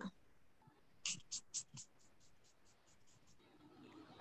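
Hand-pump spray bottle of rose water toner misting onto the face: four quick sprays about a quarter second apart, then a run of fainter, quicker sprays.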